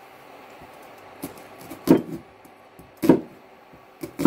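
Kitchen knife cutting through a halved onion onto a wooden cutting board: a faint knock, then two sharp knocks about a second apart.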